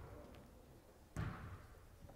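A basketball bouncing once on the hardwood gym floor about a second in, a single thud with a short echo in the hall.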